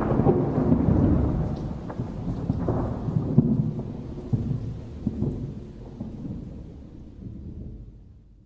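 Low rumbling, crackling noise that fades out steadily over several seconds, ending in silence just as the track closes.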